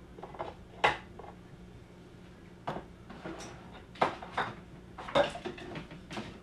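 Kitchen utensils and dishes clinking and knocking: a series of short, sharp taps, with a quick run of them near the end.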